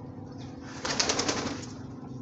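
A pigeon's wings flapping in a quick flutter lasting about half a second, starting just under a second in.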